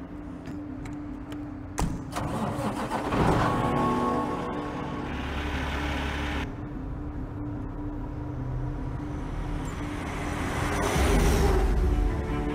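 A semi-truck's diesel engine starting and running over a music bed with a steady low held note. A sharp click comes about two seconds in, and the engine noise swells from about three seconds. A deep rumble cuts off abruptly past the middle, and the sound swells again near the end.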